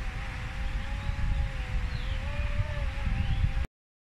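Powered platform trolley driving over a dirt track: a steady, slightly wavering whine over a low rumble, cut off abruptly near the end.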